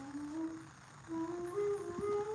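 A held note fades out. About a second in, a flute begins a slow melody of sustained notes that step upward.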